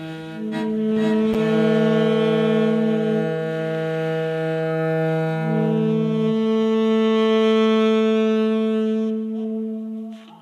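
Saxophone and cello playing long held notes together. The cello part is generated by Dicy2 machine-learning improvisation software from pre-recorded cello material. The notes shift every two to three seconds, a low note drops out a little past halfway, and the sound fades near the end.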